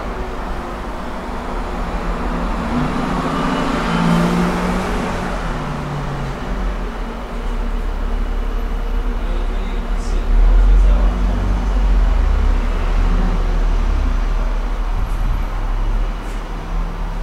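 Steady road-traffic rumble, with a vehicle swelling past about four seconds in and a heavier, deeper rumble from about ten seconds in.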